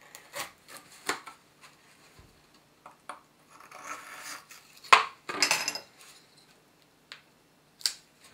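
A pointed steel hand tool scraping and clicking against the edge of a clear gypsum crystal as it is worked along the crystal's perfect cleavage to split off a thin sheet. Several sharp clicks, the loudest about five seconds in, come between stretches of gritty scraping.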